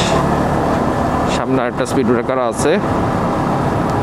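Yamaha MT-15's single-cylinder engine running steadily as the motorcycle cruises, with a constant rush of road noise. A voice speaks briefly in the middle.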